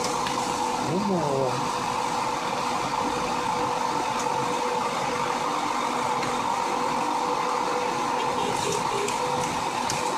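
Steady car engine and cabin noise heard from inside the car, with a constant hum running under it.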